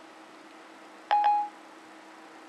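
iPhone 4S Siri chime from the phone's speaker: two quick electronic notes about a second in, the second held briefly.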